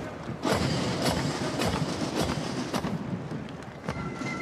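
Foot Guards detachment marching, a steady beat of sharp strikes just under two a second over a continuous outdoor hubbub.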